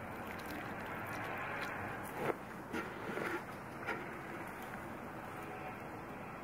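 Water pouring from a metal watering can's spout into a dibber hole in loose soil, watering in a newly planted leek, with a few brief soft knocks a couple of seconds in.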